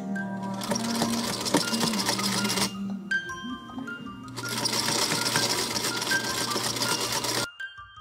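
Vintage domestic sewing machine stitching in two runs of about two and three seconds, with a short stop between them, and going silent near the end. Background music of mallet-percussion notes plays underneath.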